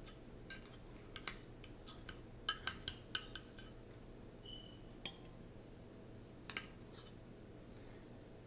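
Metal spoon clinking and scraping against ceramic dishes as scrambled egg is scooped from a bowl onto a plate: a quick run of light taps at first, then two more single clinks.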